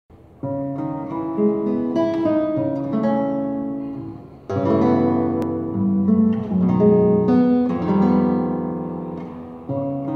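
Nylon-string classical guitar played solo with the fingers: an improvised, waltz-like piece of plucked chords and melody notes that ring on. New phrases start about half a second in, midway and near the end, and a single sharp click comes a little after the midway phrase.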